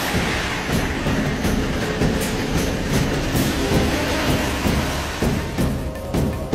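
A vehicle running with a steady low rumble and a rhythmic clatter, ticking about every half second.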